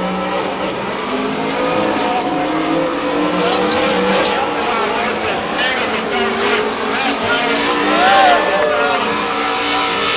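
Two drift cars' engines revving up and down at high rpm with tyres squealing as the cars slide side by side in a tandem drift, loudest a little after the eight-second mark.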